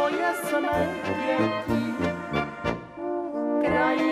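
Czech brass band (dechovka) playing an instrumental passage: tuba bass line under clarinets, trumpets and flugelhorns, with a regular beat. The music thins briefly near three seconds, then the full band comes back in.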